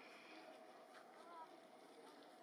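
Near silence: faint outdoor background hum, with two or three faint short chirps.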